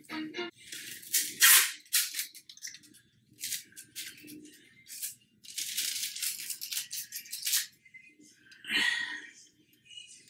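Handling noise of a small package: a run of sharp crinkling and rattling bursts, loudest about a second and a half in and thickest a little past the middle.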